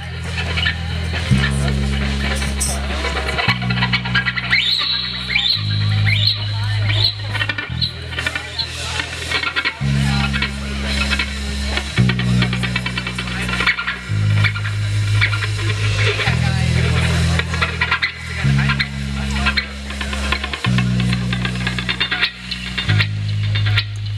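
Live rock band playing a slow, intense instrumental intro. Electric bass holds long, loud low notes that change every second or two, under electric guitar and drums.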